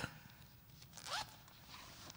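Faint room sounds in a quiet hall: a sharp knock right at the start, then a short scraping squeak that rises in pitch about a second later.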